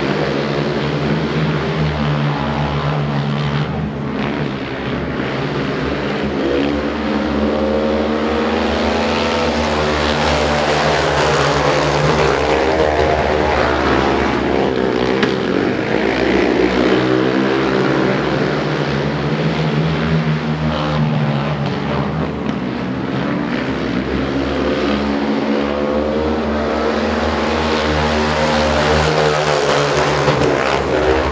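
Engines of three speedway racing quads running hard around a dirt oval, a continuous loud drone whose pitch rises and falls again and again as the riders accelerate and back off.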